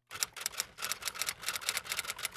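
Typewriter typing sound effect: a rapid, uneven run of sharp key clicks, about ten a second, as a title is typed out.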